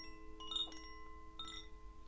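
Soft chimes struck a few times, their bright tones ringing on and overlapping.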